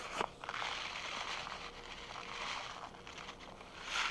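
Beet seeds being poured from a paper seed packet into a palm: a soft, continuous rustle that fades about three seconds in.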